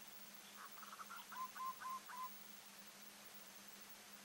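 Zebra dove calling: a quick run of short, soft staccato notes that ends in four clipped coos, lasting under two seconds.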